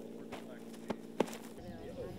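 A few short knocks as burlap sandbags are set down on the plastic sheeting, the loudest a little past a second in, over a steady low hum.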